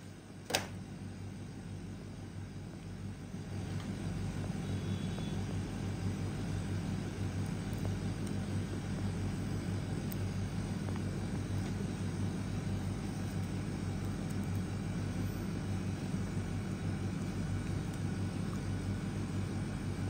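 A steady low hum and rumble, a little louder from about three seconds in, with one short click just after the start.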